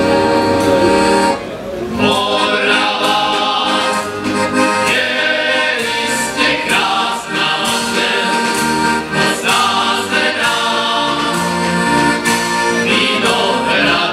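Piano accordion and a male folk choir performing a Moravian folk song: held accordion chords, a brief break about a second and a half in, then men's voices singing together over the accordion.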